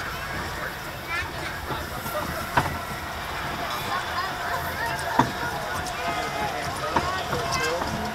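Junior roller coaster train climbing its lift hill: a steady rumble with sharp clanks every couple of seconds, under riders' voices.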